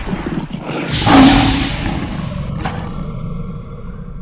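Cinematic intro sound effect: a deep rumbling whoosh that swells to its loudest about a second in, a short sharp hit near the end, then a ringing tail that slowly fades.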